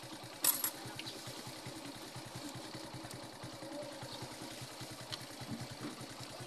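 Motorcycle engine idling steadily with an even, fast putter. A short burst of hiss about half a second in is the loudest sound.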